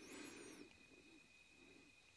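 Near silence: faint room tone with a thin steady high whine, and a few faint high chirps in the first half second.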